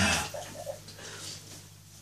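A man's loud exclamation trailing off in a small, echoing room, followed by quiet room background with a few faint brief sounds.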